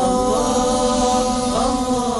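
Programme intro theme music: chanted voices holding a sustained chord over a shimmering high layer, sliding to new notes about a third of a second in and again past one and a half seconds.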